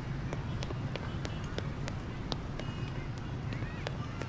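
Outdoor street ambience: a steady low rumble with scattered light clicks at irregular spacing, and faint distant voices.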